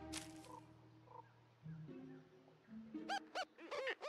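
Faint soundtrack music with soft held notes, then from about three seconds in a quick run of short, high, squeaky laughs from cartoon rodent characters.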